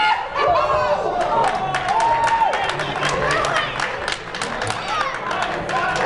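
Wrestling crowd shouting and cheering, with single voices calling out in long, held shouts over the general chatter and many sharp short knocks mixed in.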